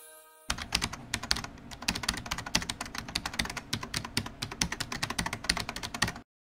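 Rapid computer-keyboard typing, a dense run of irregular key clicks that starts about half a second in and keeps going without a break.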